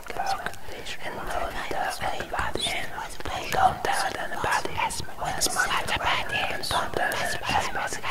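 A person whispering softly, with short pauses between phrases.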